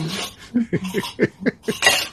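A person's voice in a quick run of short chuckles, falling in pitch, followed by one sharp, loud burst near the end.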